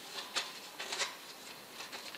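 A few light clicks and taps of a thin zinc strip against a stainless-steel chimney pipe as it is wrapped around the pipe's top by hand, the clearest about half a second and a second in.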